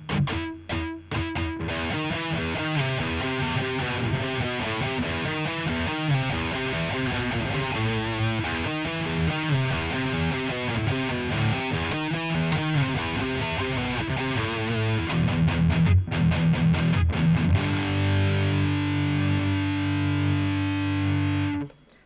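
Fret King Super Hybrid electric guitar on its bridge pickup through high-gain distortion, set with lots of gain, scooped mids and boosted bass, playing fast metal riffs. The guitar growls, and the playing ends on a long held chord that is cut off sharply near the end.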